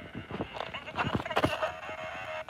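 Several dull knocks as a boot kicks a fire-damaged battery-operated Santa toy lying in snow. Under them, faint pitched warbling comes from the toy, a sign that its electronics still work after the fire.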